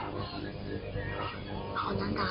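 Soft background music bed playing under a pause in the talk, with a short faint vocal sound near the end.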